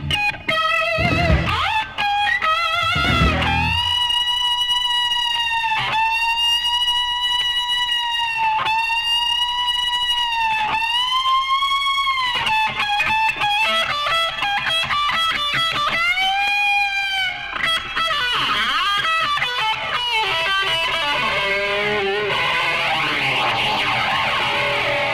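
Progressive rock recording: a lead electric guitar holds long sustained notes that bend up and fall back, with the bass and drums dropping out a few seconds in.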